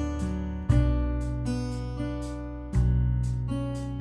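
Background music of acoustic guitar chords: a chord strummed under a second in and another about two-thirds through, each left to ring and fade.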